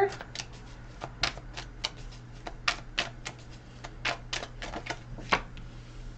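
A tarot deck being handled and shuffled by hand: an irregular run of light card clicks and slaps, about four a second, ending as a card is laid down on the cloth.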